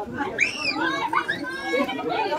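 Children's voices calling out, high-pitched and rising and falling in pitch, over general chatter.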